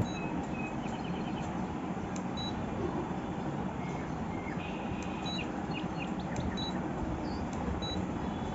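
Handheld portable pulse spot welder beeping as its power level is stepped up: a scattered series of short, high electronic beeps, some in quick runs, over a steady background hiss and rumble.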